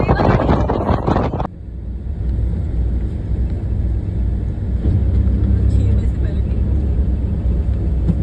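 Wind buffeting the microphone of someone riding in an open vehicle for about the first second and a half. It then gives way abruptly to the steady low rumble of a vehicle driving along a road.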